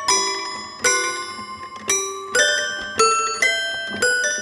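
Toy piano played slowly, a struck note or chord about every half second, each bright and ringing before it dies away, with no bass notes.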